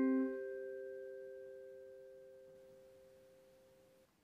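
A chord struck on vibraphones rings on, the metal bars' pure, sustained tones fading steadily away to near silence.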